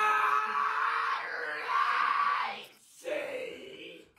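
Young men shouting and screaming in a small room. One held yell at the start turns into rougher screams that stop about two and a half seconds in, then a shorter shout follows.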